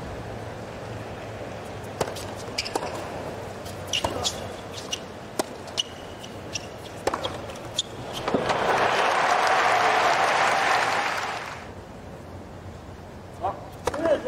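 Tennis ball bounces and racket strikes on a hard court, sharp irregular knocks over a low stadium crowd murmur. About eight seconds in, the crowd breaks into loud cheering and applause for about three seconds, then settles back.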